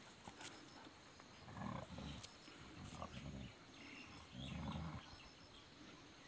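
Bhotiya dog growling low in three short bouts, about one and a half, three and four and a half seconds in.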